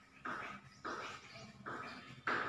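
Chalk writing on a chalkboard: three short scratching strokes, each starting sharply and fading away, about two-thirds of a second apart.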